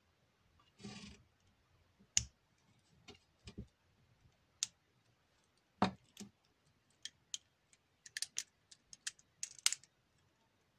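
Plastic LEGO bricks clicking and tapping as they are handled, pressed together and set down on the board: scattered sharp clicks, with a short rustle about a second in and a quick run of clicks near the end.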